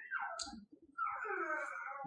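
A soft, indistinct voice: a drawn-out falling sound, then about a second of quiet, murmured vocalising, much fainter than normal speech.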